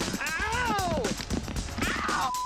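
Chunks of real ice from a movie hail-effects machine falling and striking the ground and people as a rapid run of small hits. A long yelp rises and then falls in pitch over the hail, with a shorter falling cry near the end.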